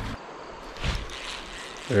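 Creek water trickling steadily, with one brief knock about a second in.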